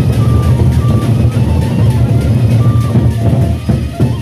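A Sasak gendang beleq ensemble playing on the march: many large double-headed barrel drums beaten hard in a dense, fast pattern, with short high melodic notes sounding over the drumming. The drumming eases briefly near the end.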